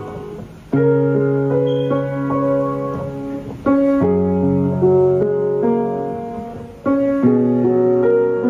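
Piano played slowly and softly: a low chord struck about every three seconds, with a melody of single notes above it, each chord left to ring and fade.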